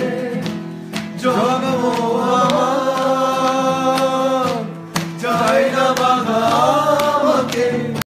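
Music with singing: voices holding long notes that bend slightly at their ends, with short breaks about a second in and about five seconds in.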